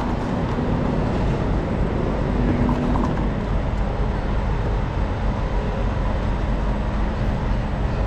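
Steady city street traffic rumble of passing and idling vehicles, with a low steady hum running under it.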